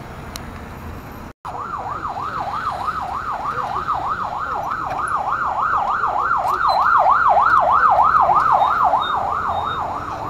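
Electronic siren on a fast yelp, its pitch rising and falling about three times a second, starting just after a short drop-out of all sound a little over a second in. It grows louder towards the last few seconds and then eases off, over steady road noise of traffic.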